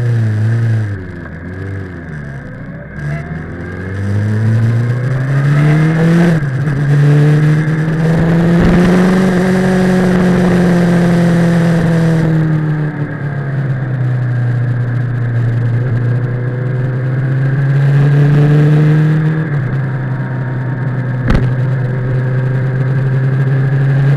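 Kawasaki ZX-10R's inline-four engine under way at moderate revs. Its pitch climbs under throttle and drops suddenly at a gear change about a quarter of the way in, holds steady, then climbs and drops again at another change about four-fifths of the way in. A single sharp click comes near the end.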